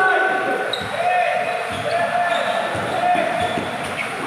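A basketball being dribbled on a concrete court, bouncing irregularly about twice a second, with players' shouts and calls over it.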